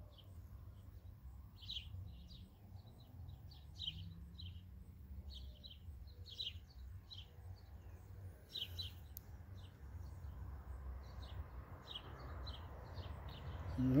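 Small bird chirping repeatedly, short high chirps about one or two a second, over a steady low outdoor rumble.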